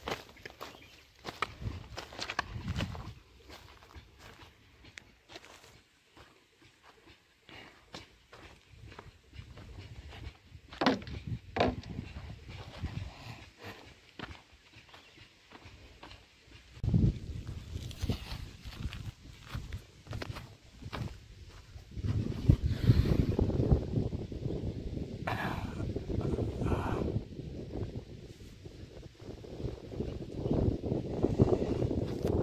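Footsteps scuffing and crunching on dry soil and crop stubble, with small knocks and rustles. From about 22 seconds in, a louder, rough low rumble sets in.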